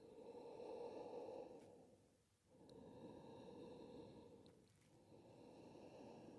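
Faint, slow ujjayi breathing, the audible throat breath of Ashtanga practice: three soft breath sounds of about two seconds each, with short pauses between them.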